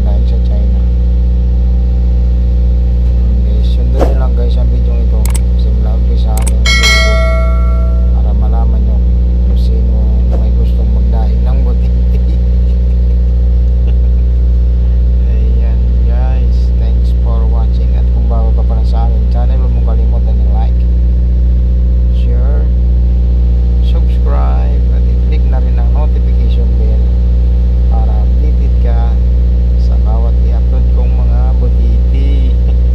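A loud, steady low mechanical hum that does not change, with faint voices in the background and a short high tone about seven seconds in.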